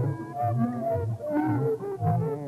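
Electronic music: a quick, busy run of short synthesizer tones that bend and glide in pitch, several sounding at once.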